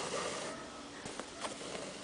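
Faint rustle of a double strand of embroidery thread being drawn through the hooped fabric, with a couple of light ticks about halfway through.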